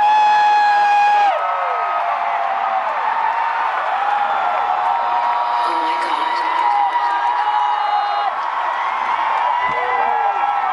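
Several long held voices overlapping over a concert crowd's cheering, each note sliding up at the start and falling away at its end; the loudest held note opens and ends after about a second.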